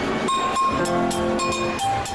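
Afoxé band music starting up: a chord of several held notes with sharp percussion strikes about three to four times a second, in ijexá style.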